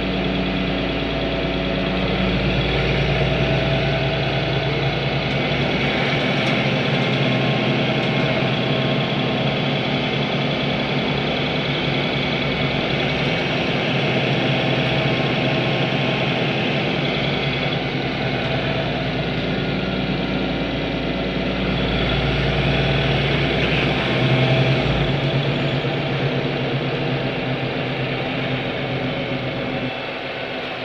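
Ursus City Smile 12LFD city bus heard from inside the passenger cabin while on the move: a steady engine and running drone whose pitch shifts up and down, with a brief low thump about 25 seconds in.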